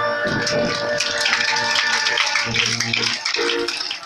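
A group of voices singing a cappella, holding steady notes, with sharp rhythmic clicks over the singing; the song breaks off near the end.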